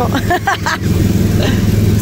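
Engine of a small Autopia ride car running steadily as it drives along, a low even drone. A voice speaks over it in the first second.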